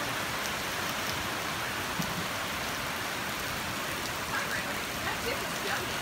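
Heavy rain pouring down steadily, an even hiss of the downpour on foliage and pavement.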